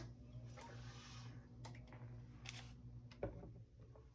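Faint sounds of a person drinking water: a soft hiss about half a second in, then a few quiet clicks, over a low steady hum.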